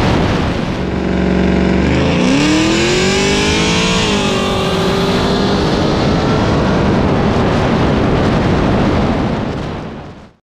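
Car engine at full throttle in a roll race, heard from a camera mounted outside the car, with heavy wind rush. The note is steady at first, then about two seconds in it climbs for a couple of seconds, dips briefly and holds, and it fades out at the very end.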